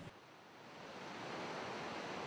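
Low, steady rush of water from Yosemite Falls. It fades in about half a second in, after a brief moment of silence.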